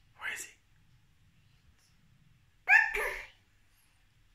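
A toddler's short wordless vocal sounds: a brief breathy huff just after the start, then a louder, high-pitched exclamation a little under three seconds in.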